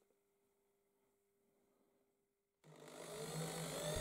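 Near silence, then about two and a half seconds in a corded electric drill's motor comes in and grows louder, with a rising whine as it speeds up to bore a large blind hole in an MDF board.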